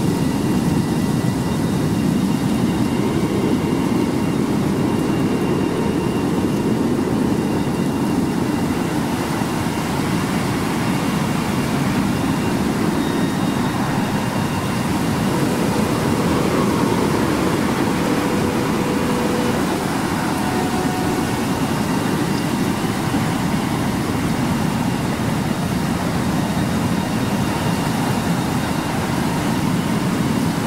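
A steady, dark rumbling drone, with a few faint held tones above it.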